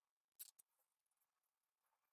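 Near silence, with one faint short scrape about half a second in from a metal offset spatula working whipped cream onto a crumbly almond dacquoise disc.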